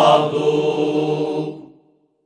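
Alentejo folk choir singing cante alentejano a cappella, holding the final chord of the song on the last word; the held voices fade out and stop shortly before the end.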